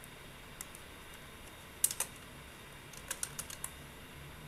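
Computer mouse and keyboard clicks: a couple of sharp clicks about two seconds in, then a quick run of keystrokes near the end.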